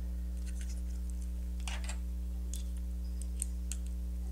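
A few faint, scattered clicks and a brief scrape of small bolt-and-nut hardware being handled and worked with a small tool, over a steady low hum.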